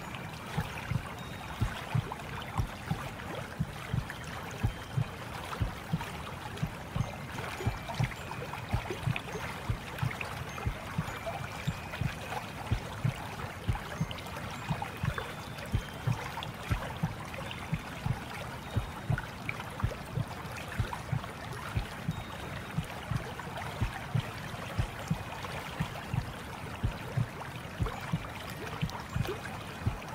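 Water flowing and gurgling, with frequent soft low splashes, about two or three a second, and a few faint short high tones above it.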